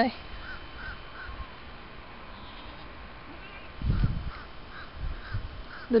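Birds calling in the background: a string of short, faint calls repeated at irregular intervals. A brief low rumble comes about four seconds in.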